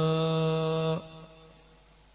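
A man's voice chanting an Arabic devotional poem in praise of the Prophet, holding the last syllable of a line on one steady note. The note breaks off about a second in.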